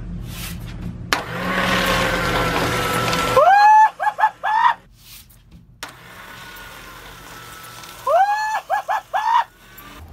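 Electric paper shredder running and chewing through a paper sign, a noisy grinding with a motor hum. Twice, a loud high-pitched sound glides up and breaks into a few quick repeated notes.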